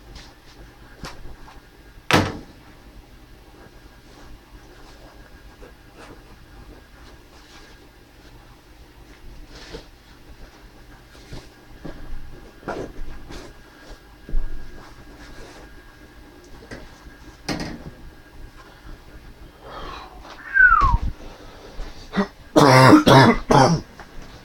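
A man coughing hard several times near the end, after scattered clicks and knocks of someone moving about a small room.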